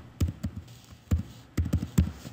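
Computer keyboard keys being typed one at a time: a handful of short, separate clicks at uneven spacing.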